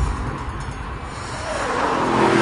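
Aston Martin V8 Vantage's V8 engine running under load with tyre and road noise, growing louder towards the end, after a short low thump at the start.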